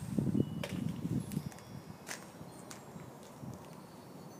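A person's footsteps and movement, shuffling for the first second and a half and then quieter, with a few faint sharp clicks.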